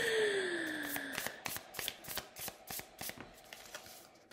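A deck of oracle cards being shuffled by hand, the cards sliding and tapping against each other in short irregular clicks, about three or four a second. A faint falling hum at the start fades out within the first second.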